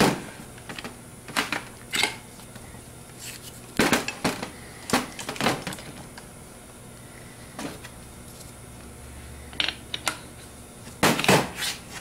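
Scattered light clicks and knocks, a dozen or so at uneven intervals, of small metal alternator parts and tools being handled and set down on a workbench during reassembly.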